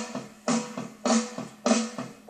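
Slow blues backing track playing, with drums and chords hitting together on a beat about every 0.6 seconds.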